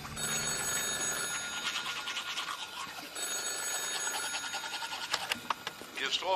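Telephone ringing twice, each ring a fluttering high tone about two seconds long with a pause of about a second between them, followed by a few clicks near the end.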